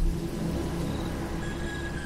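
Low, steady rumbling drone of a dark ambient background soundtrack, with faint thin high tones above it.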